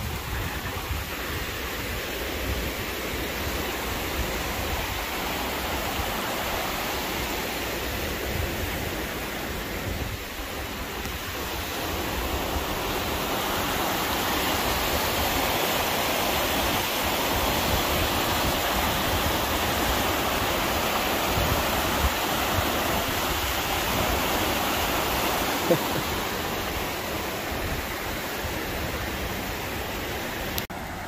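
River water rushing over rock rapids built where a dam was removed, a steady rush of whitewater below a bridge. It grows louder about a third of the way in and eases again near the end.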